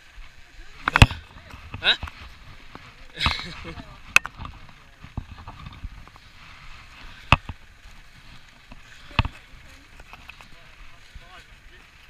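Mountain bikes and riding gear being handled: about four sharp knocks and clatters a couple of seconds apart, the loudest about a second in, with brief voices between them.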